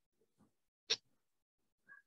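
Near silence broken once, about a second in, by a single short click.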